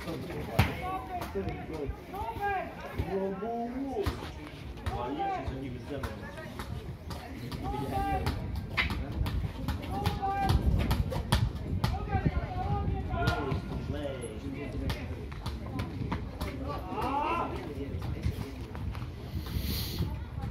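Voices calling out across a football pitch, too distant for words to be made out, over a low rumble. There are scattered sharp knocks, and a louder call comes near the end.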